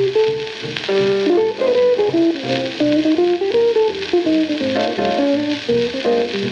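A 1946 small-band jazz recording (tenor sax, electric guitar, piano, bass and drums) playing from a 78 rpm shellac record: a single melodic solo line moving in short stepped notes over the rhythm section. Steady surface hiss and fine crackle from the disc run under the music.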